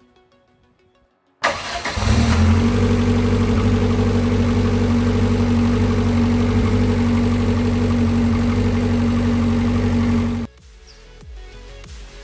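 1995 Lotus Esprit S4s's turbocharged 2.2-litre four-cylinder engine cold-starting: a brief crank about a second and a half in, then it catches and settles into a steady idle. The engine sound cuts off abruptly near the end.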